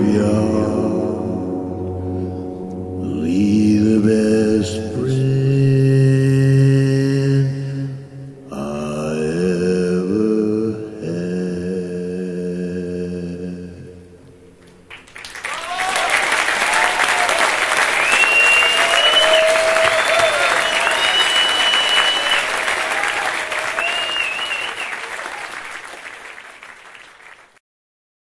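The last sustained chords of a live song, voices and held tones, dying away about 14 seconds in. Then a concert audience applauds and cheers, with a few whistles, fading out near the end.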